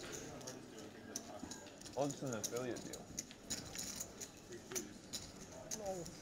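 Poker chips clicking at the table, a run of light, irregular clicks, with a short stretch of voice about two seconds in.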